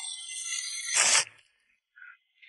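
An electronic jingle of high ringing tones that ends a little over a second in with a short, loud noisy burst.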